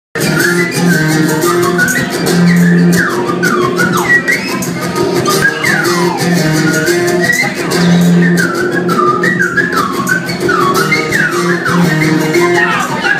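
Live band music: a slide whistle plays swooping up-and-down glides over repeating bass notes and a fast rattling percussion beat.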